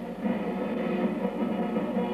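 Background music: several held pitched lines over a pulsing low line.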